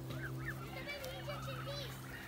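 Canada geese and their goslings calling as they walk: many short, overlapping peeps that rise and fall, with a steady low hum beneath.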